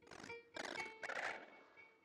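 Free-improvised experimental music from electronics and guitar: three harsh, noisy swells of about half a second each over a few faint held high tones, the last two the loudest.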